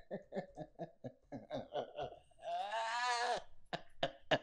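A man laughing hard: a quick run of short breathy bursts, then one long pitched cry of laughter that rises and falls, lasting about a second from roughly two and a half seconds in, then short bursts again.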